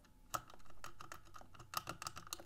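Small clicks from the code wheels of a cheap, mostly plastic combination key lockbox being turned while a notch decoder holds the bar behind them, as each wheel is felt for its loose spot to decode the combination. One sharper click comes about a third of a second in and a quick run of clicks comes near the end.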